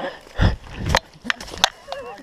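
Mountain bike thudding and clattering on the trail: a heavy thump about half a second in, then a few sharp knocks.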